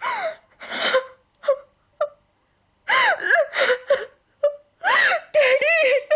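A person wailing and gasping in distress in short, high-pitched cries whose pitch rises and falls. The cries pause briefly about two seconds in, then come thicker toward the end.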